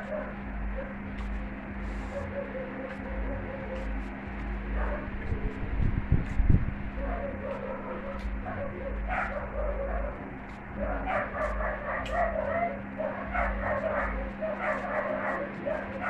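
Fork clicking and scraping on a plate during eating, over a steady electrical hum. From about nine seconds in, a dog whimpers and yips repeatedly.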